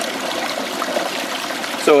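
Small garden-pond waterfall splashing steadily onto a hand held in the falling water. The hand stands in for a rock, and the water striking it gives a different splash from the waterfall's usual deep babbling-brook sound into its plunge pool.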